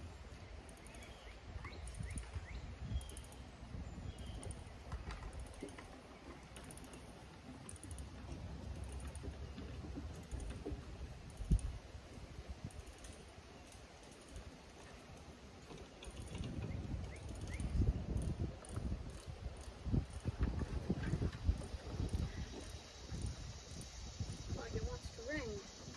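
Footsteps, paw steps and knocks on a trailer deck and wooden dog crate as a large dog is handled and led out of the crate: scattered thumps, one sharp knock about halfway through, and a busier run of thumps in the last third.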